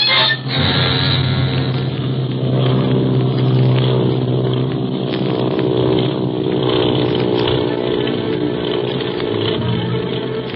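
Radio-drama sound effect of an airplane engine droning steadily, with music mixed underneath; the sound dips briefly just after the start, then holds at one steady pitch.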